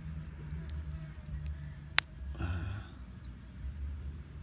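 A ripe red hybrid chili pepper snapped in half between the fingers: a few faint clicks, then one sharp snap about halfway through.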